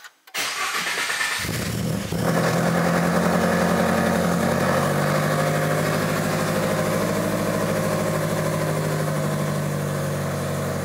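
Toyota GR86's 2.4-litre flat-four engine being started from inside the cabin: the starter cranks for about a second, the engine catches and flares briefly, then settles into a steady fast idle.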